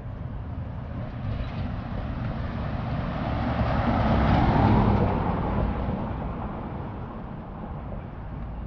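A cargo van driving past close by: its tyre and engine noise swells, peaks about halfway through, and fades away.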